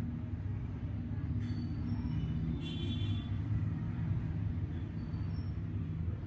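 A steady low hum with several held low tones, like a machine or an appliance running.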